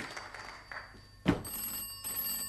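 Desk telephone bell ringing, the burst dying away just under a second in; a sharp thump follows, and then the bell starts ringing again.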